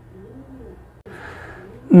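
Faint cooing of a pigeon-type bird in the first second, then a soft hiss.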